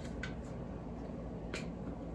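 Two faint, brief clicks as a black makeup compact is handled in the fingers, the clearer one about a second and a half in, over quiet room tone.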